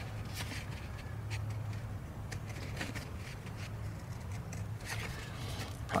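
Scissors cutting through a thin cardstock template: a scatter of faint, irregular snips and crunches.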